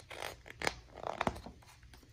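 A picture-book page being turned by hand: paper rustling and sliding, with two sharper paper snaps, about two-thirds of a second and a second and a quarter in.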